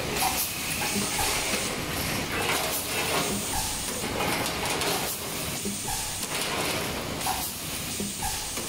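A YW-L4S four-cavity full-electric PET blow moulding machine running production. Compressed air hisses steadily from the blowing and exhausting, with short clicks and knocks from the moving mechanisms repeating about every half second.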